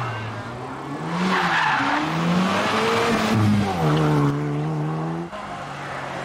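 Hot hatchback's engine under hard acceleration out of a hairpin, its pitch rising and dropping with gear changes, then held steady before it cuts off suddenly about five seconds in, leaving a quieter engine.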